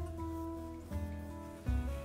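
Background music of plucked guitar, a new chord sounding about once a second over a low bass note.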